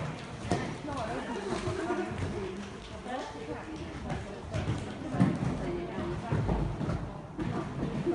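People talking, with a horse's hoofbeats as it canters on the arena's sand footing, and a louder thump about five seconds in.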